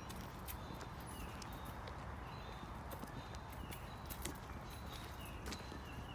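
Birds singing in woodland: short high chirps, roughly once a second, with scattered sharp clicks.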